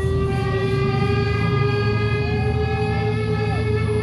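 Live rock band's amplified instruments holding a sustained droning note over a steady low rumble. A second, higher tone bends up a little past two seconds in and drops away about a second later.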